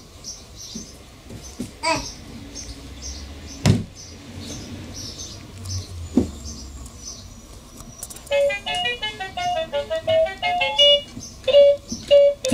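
A bird outside chirps over and over in short high calls, about three a second, with a few sharp knocks from a toddler on a plastic toy wagon. About eight seconds in, a tinny melody of quick plucked-sounding notes starts up.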